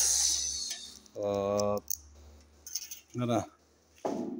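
Sheet-metal cover of a forage chopper being opened by hand, a metallic scrape and rattle that fades over about the first second.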